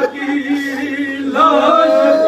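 A man chanting a noha, a Shia mourning lament, unaccompanied. He holds one long steady note, then starts a new, higher phrase near the end.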